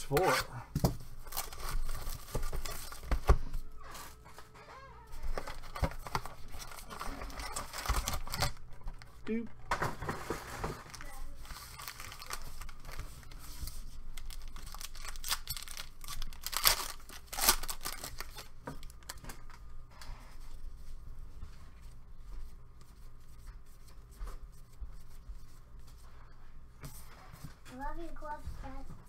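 Foil trading-card packs being torn open and crinkled by hand, in irregular bursts, with the cardboard box and cards rustling between them.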